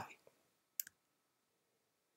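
Near silence with a single short click about a second in.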